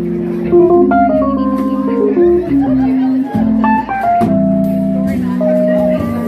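Live jazz trio playing: a stage keyboard holding chords and stepping through a melody, an upright double bass plucking underneath, and a drum kit with cymbals.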